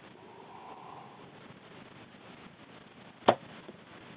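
A compound bow shot: one sharp snap of the string and limbs as the broadhead-tipped arrow is released, about three seconds in.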